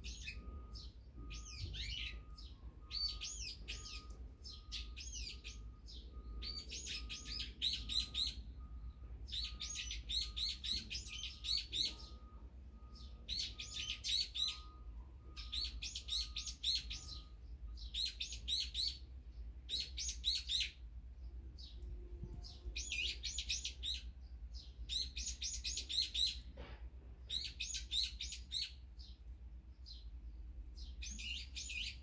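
Small songbirds chirping in repeated bursts of quick high notes, a burst every second or two. A faint short note repeats about twice a second through the first half, over a steady low background rumble.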